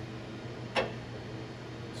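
A single sharp metallic click about three-quarters of a second in, as a tool holder is handled and fitted up into the spindle of a CNC vertical mill, over the mill's steady low hum.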